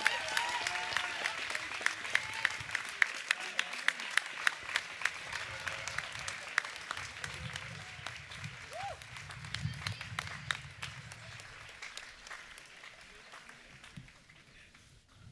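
Audience applauding a graduate. The clapping is dense at first, then thins to scattered claps and fades away near the end.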